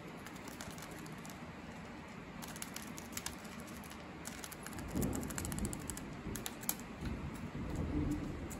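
Java sparrow pecking and tugging at a folded paper crane on a wooden tabletop: a run of quick light beak clicks and paper crinkles, with a low dull thud about five seconds in and another near the end.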